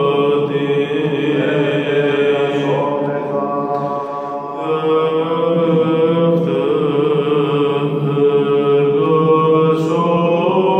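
Byzantine chant: a male cantor (protopsaltis) singing a Greek Doxastikon hymn solo, in long held and gently wavering notes. The voice eases briefly about four seconds in, then carries on.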